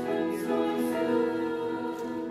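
High school women's choir singing sustained chords in several parts.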